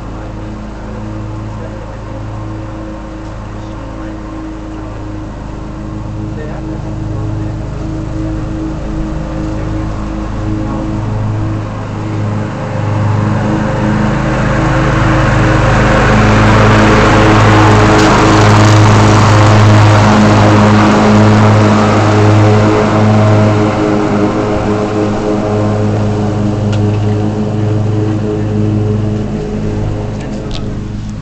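Stihl FSA 56 battery string trimmer running, a steady hum from its motor and spinning line. A rushing noise builds over it, is loudest through the middle and eases off near the end.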